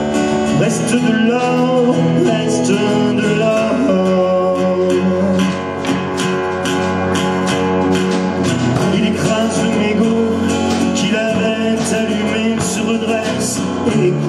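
Live acoustic band playing an instrumental passage of a French pop-rock song: strummed acoustic guitars over a drum kit, with a melodic lead line above them.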